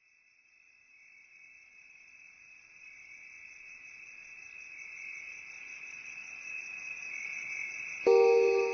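A steady, high-pitched insect-like trill with a fast, even pulse, fading in and growing steadily louder, then stopping suddenly at the end.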